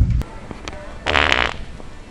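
A fake fart from a prank fart-noise device: a loud, buzzy, wet-sounding blast lasting about half a second, about a second in. Just before it, a deep low rumble cuts off abruptly.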